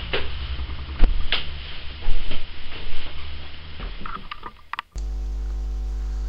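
Handling knocks and scuffs close to the microphone, with a low rumble, over the first few seconds. About five seconds in, these give way abruptly to a steady electrical mains hum.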